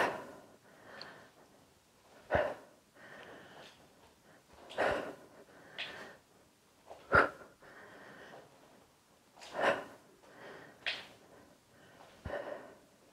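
A woman breathing hard through a dumbbell exercise: a short, sharp exhale about every two and a half seconds, with quieter breaths in between.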